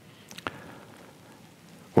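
A pause in speech: faint steady hiss of room tone with a few small clicks, the clearest about half a second in.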